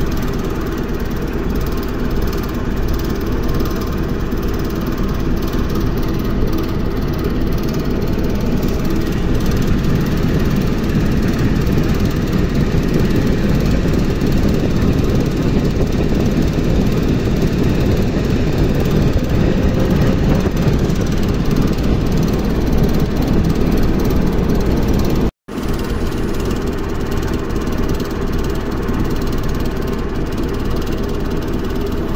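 Steady running noise of an ER2R electric multiple unit heard from inside the car as it travels, with the hum of its traction motors and the wheels on the rails. The noise swells somewhat in the middle and cuts out for an instant about 25 seconds in before resuming.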